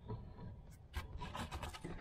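Handling noise: rubbing and scraping with a few light knocks, mostly in the second half.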